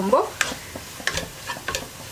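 A spatula stirring fried onions and spice powder in a nonstick pan, scraping and tapping against the pan several times, over a faint sizzle of frying in oil.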